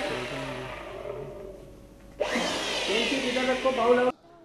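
Two long hissing whooshes, the first fading over about two seconds and the second starting suddenly about two seconds in, with faint music beneath. This is the kind of dramatic whoosh effect laid over a TV serial drama shot. The second whoosh cuts off suddenly at the end.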